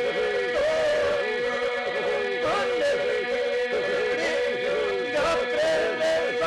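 Men's group singing an Albanian polyphonic folk song, unaccompanied: one steady held drone runs beneath wavering, heavily ornamented lead voices.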